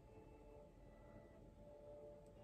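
Near silence: faint room tone with a few faint steady tones.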